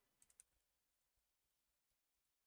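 Near silence with a few faint computer keyboard keystrokes, a quick cluster of clicks within the first half second.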